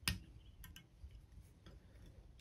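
A few faint clicks and ticks from handling the thread bobbin and tools at a fly-tying vise while thread is wrapped over a hackle stem. The sharpest click comes right at the start, with fainter ticks a little past half a second and near the end.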